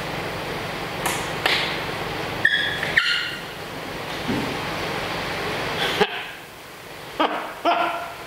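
A steady hiss that cuts off suddenly about six seconds in, with a few light clicks and brief high tones while multimeter probes are held against a lump of material, and a short voice sound near the end.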